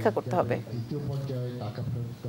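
Speech only: a loud voice trails off about half a second in, then a man talks more quietly into press-conference microphones, over a low steady hum.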